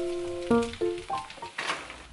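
Food sizzling with light crackles in a hot pan as bonito flakes are scattered over it, with a louder rush of hiss near the end. Piano background music plays a few notes and fades out about halfway.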